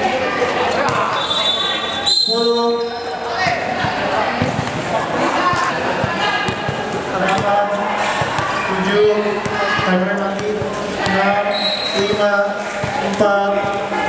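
Basketball bouncing on a hard indoor court during play, in a large echoing hall, with players and onlookers calling out. The game sound breaks off briefly about two seconds in.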